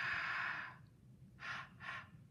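A person exhaling onto a phenolphthalein-stained paper flower to take away its pink colour: one long breath lasting about a second, then two short puffs near the end.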